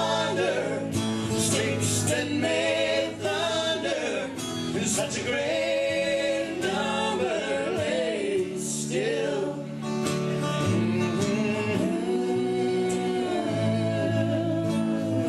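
Live acoustic country band: two acoustic guitars strummed over an electric bass, with the singers' voices in harmony over it.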